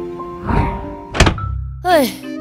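Background music breaks off, followed by a rising whoosh and then a single heavy thunk a little after a second in. A low drone and sliding, wavering sound-effect tones follow near the end.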